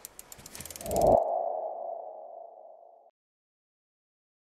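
Logo animation sound effect: a rapid run of ticks building to a swell about a second in, then a single mid-pitched tone ringing and fading away, gone by about three seconds in.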